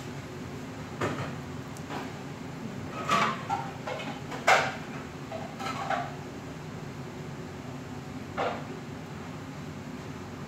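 Kitchen handling noises: a few short knocks and clatters, the loudest about four and a half seconds in, over a steady low hum.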